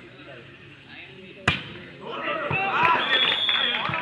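A volleyball struck hard once about a second and a half in, then loud shouting from several players and spectators, with a couple of duller ball hits as the rally goes on.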